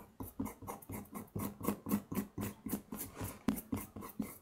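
Fingertips rubbing briskly back and forth over paper pasted onto a wooden printing block: a rhythmic dry scrubbing of about four strokes a second.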